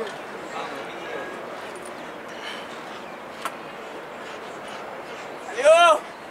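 Steady outdoor background noise, then one short, loud, high-pitched dog bark near the end.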